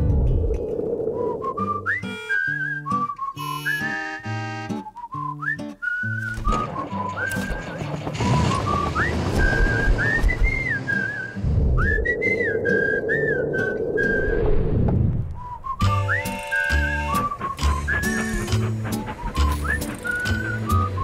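Soundtrack music with a whistled melody over a plucked bass line. A rushing noise swells up twice in the middle.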